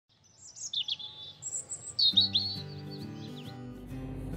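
Birds chirping in quick, high, swooping calls. About two seconds in, soft sustained music chords come in beneath them.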